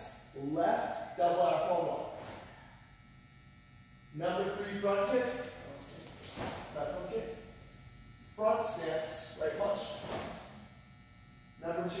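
Speech only: a man's voice speaking in short phrases with pauses between them.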